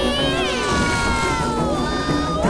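High-pitched voices cry out in long gliding whoops that slide slowly down in pitch, over background music.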